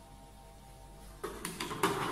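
Faint background music, then, from a little past a second in, a run of clicks and knocks as a plastic handpiece and its cable are picked up and handled.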